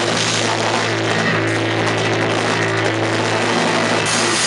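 Live rock band playing an instrumental passage with no vocals. Electric guitars and bass hold a low chord steadily over drum kit and cymbals, and a trumpet plays along.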